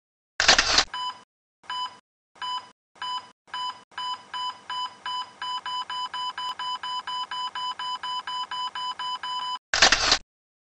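Electronic intro sound effect: a short loud burst of noise, then a run of identical electronic beeps that start slowly and speed up to about four a second, ending in another loud burst of noise.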